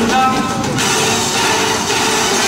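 Recorded show music for a winterguard routine, with crowd cheering swelling into a steady noisy roar from about a second in.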